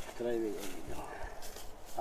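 A short murmur of a voice about half a second in, then soft rustling of dry fallen leaves and grass underfoot as someone walks slowly through them.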